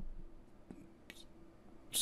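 A pause in a man's narration: faint room tone with a low steady hum, a small mouth click about halfway, and a quick breath in just before the end.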